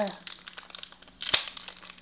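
Foil Panini trading-card packet crinkling and crackling as it is handled and pulled open, with one sharp snap about a second and a half in.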